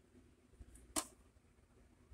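A single sharp click about a second in, as a front-panel button is pressed on an LG DM-441B bench multimeter, over faint room tone.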